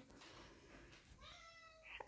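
A house cat meowing faintly, one short call about a second in.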